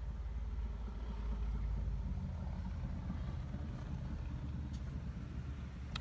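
Low, steady rumble of a vehicle engine, heard from inside a van; it is heaviest for the first two seconds, then eases.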